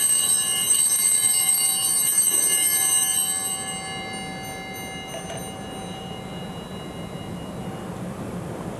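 Altar bells ringing at the elevation of the host during the consecration: a shimmering cluster of high, steady tones that rings out and then fades away over the first half.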